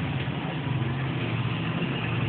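Honeybees humming steadily around an opened hive and a lifted frame, a continuous low drone.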